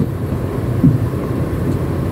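In-cabin road and engine noise of a 2007 Daihatsu Terios TX with a 1.5-litre four-cylinder engine and manual gearbox, moving slowly over a rough, potholed road: a steady low rumble of engine and tyres, with the suspension taking the bumps.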